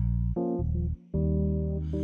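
Electronic keyboard playing held chords over deep bass notes. The chord changes twice, with a brief break about a second in.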